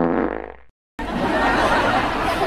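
A cartoon fart sound effect: a short buzzy raspberry that fades out within the first second. After a brief silence, a steady rushing noise follows.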